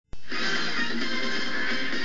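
News-programme segment intro music played through a television set's speaker, cutting in suddenly just after the start.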